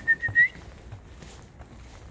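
A person whistling one short, steady note that slides upward at the end, calling a dog; it lasts about half a second.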